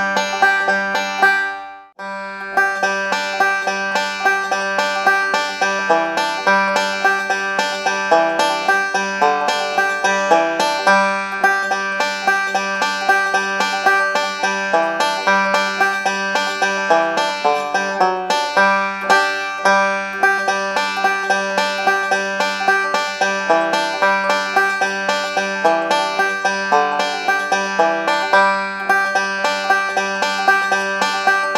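Five-string banjo picked in three-finger bluegrass rolls, a fast, steady stream of notes. The playing breaks off briefly about two seconds in, then carries on without a pause.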